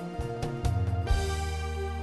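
Instrumental song intro led by keyboard: a few struck notes, then a held chord with a deep bass note from about a second in.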